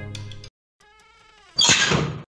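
Background music cuts off about half a second in. A faint, slightly falling squeak follows, then a loud, hissing noise burst like a sound-effect crash or whoosh near the end.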